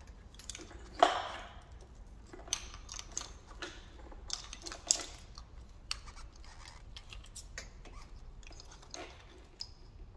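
Engine wiring harness being handled and routed toward the ignition coils on a Toyota 3S-GE engine: rustling of the wire loom with scattered small plastic clicks and taps, the sharpest click about a second in. A faint steady low hum lies underneath.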